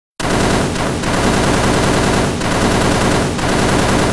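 A loud, dense rattling noise made of rapid pulses, starting abruptly and fading away right at the end. It plays over the title animation as an intro sound effect.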